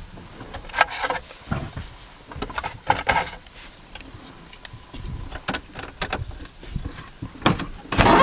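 Scattered clicks, knocks and rustles of things being handled inside a parked truck's cab, a few sharper knocks standing out now and then.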